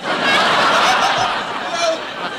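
Google's laughing audio emoji played during a call: a recorded laugh-track sound effect that starts suddenly, loud, and eases off slightly near the end.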